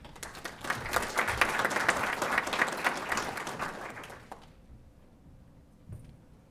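Audience applauding. The clapping swells quickly and dies away about four seconds in.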